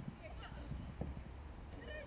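Distant shouts of young football players across the pitch, with one sharp knock about a second in and low wind rumble on the microphone.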